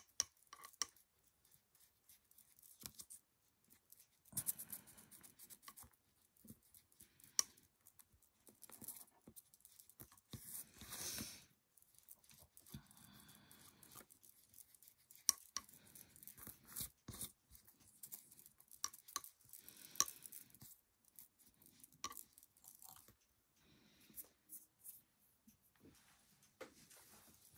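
Round ink blending tool rubbing and dabbing ink over a small paper print on a cutting mat, distressing it to look old: faint, irregular scratchy swishes and light taps, with one longer brushing stroke about halfway through.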